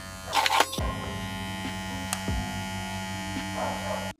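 WMARK NG-208 cordless hair clipper running with a steady motor buzz during a tachometer speed test, at about 5,700 RPM on a battery that is not fully charged. A brief rustle about half a second in.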